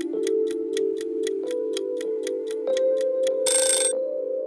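Countdown timer ticking about four times a second over a steady synthesizer music bed, ending near the end with a short, loud ringing alarm.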